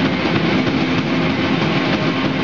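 A guitar-and-drums rock duo playing live: a dense, loud, unbroken wash of electric guitar and drum kit with a steady held pitch underneath.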